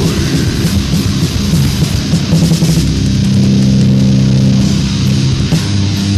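Death/doom metal from a 1990 demo recording: heavily distorted electric guitars over drums and cymbals, with a chord held for a couple of seconds in the middle.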